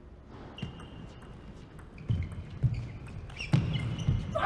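Table tennis rally: sharp knocks, a fraction of a second to a second apart, as the ball is struck by rubber-faced paddles and bounces on the table, with short squeaks of players' shoes on the court floor.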